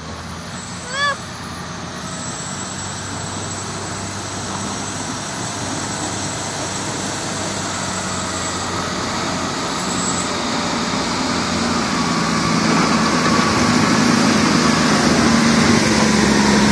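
Large municipal snow plow's diesel engine running as it approaches and passes close by, growing steadily louder. A short vocal exclamation is heard about a second in.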